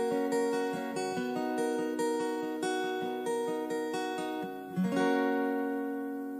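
Closing bars of a country song after the last sung line: a guitar picking single notes over held ringing strings, slowly getting quieter, then a final chord struck near the end that rings out and fades.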